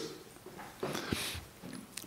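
A pause between a man's words at a microphone: a faint breath, with a small mouth click a little after a second in.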